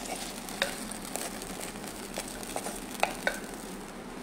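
Wilted vallarai keerai being scraped with a spatula out of a hot kadai onto a wooden plate: a steady sizzling hiss from the pan, with scattered light clicks and scrapes of the spatula.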